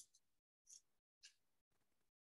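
Near silence in a small room, broken by three faint, short hissing sounds about half a second apart.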